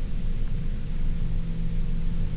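A steady low rumble with a faint steady hum.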